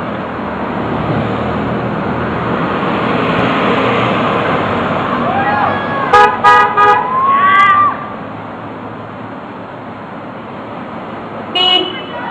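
Cars passing on a city street. About six seconds in, a car horn gives a few short toots in answer to 'honk for jobs' signs, met by whoops and cheers from a small group. Another short honk comes near the end.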